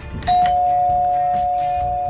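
Two-tone doorbell chime rung by a press on the button: a higher note about a quarter second in, then a lower note, both ringing on and slowly fading.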